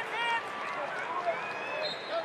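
Wrestling shoes squeaking on the mat as two wrestlers shift their feet while hand-fighting in a standing stance: several short, high squeaks over a background of indistinct arena voices.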